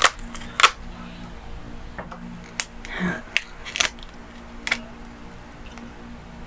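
Clear plastic takeout container being opened and handled: about seven sharp plastic clicks and crackles spaced irregularly over the few seconds.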